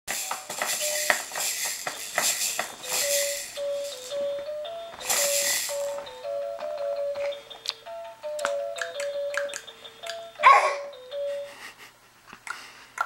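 LeapFrog electronic musical activity table, set off by a toddler pressing its buttons: first a few seconds of rattling, shaker-like sound effects, then a simple electronic tune of plain stepping notes. A brief loud burst cuts in near the end.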